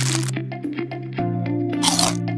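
A plastic snack wrapper crinkling and crackling as it is torn open, then a bite into a chocolate sandwich cookie near the end, over background music.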